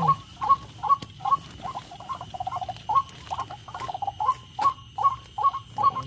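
White-breasted waterhen calls played through small loudspeakers as a trapping lure: a short croaking call repeated evenly, about two to three times a second, the calls crowding together for a couple of seconds in the middle.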